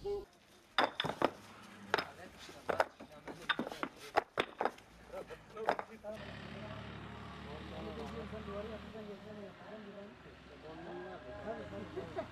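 Concrete interlocking paving stones clacking and knocking against each other as they are laid by hand, an irregular run of sharp hard knocks. They stop about six seconds in, giving way to a low steady hum.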